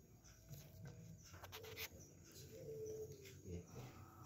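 Quiet room with faint, low, repeated cooing calls like a bird's, and a few soft clicks about a second and a half in.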